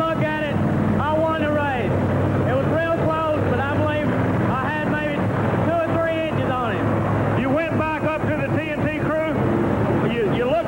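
A man talking into a handheld microphone, over a steady low engine drone.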